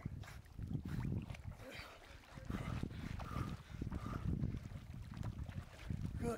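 Lake water sloshing and splashing close to the microphone as a swimmer and a dog paddle through it, in irregular surges with a low rumble.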